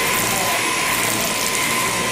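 Electric sheep-shearing handpiece on an overhead drive running steadily as its comb and cutter shear through a sheep's fleece.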